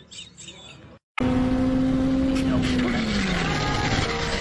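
Sport motorcycle engine heard from on board, starting abruptly about a second in over a steady rush of noise. Its single high engine note holds level, then falls away over the last second as the revs drop going into a bend.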